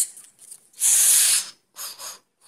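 Bursts of high-pitched hissing noise: short ones near the start, one lasting about half a second from just under a second in, and a short one near the end.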